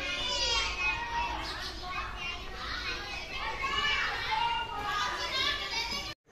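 Children's voices chattering and calling in high pitches, overlapping without a break.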